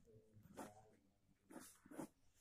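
Near silence, with a few faint short sounds about half a second in and again near the end.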